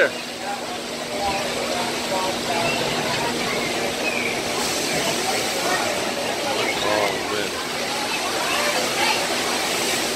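Steady rush of water running through a log flume ride's channel, with indistinct voices of people around it. A low steady hum sits under it for the first half.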